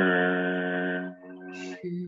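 A voice chanting one long note at a level pitch. It is loud for about the first second, then drops and carries on softer at the same pitch.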